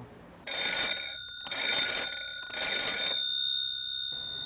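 Old-style telephone bell ringing in three short bursts, its metallic bell tones hanging on briefly after the last ring.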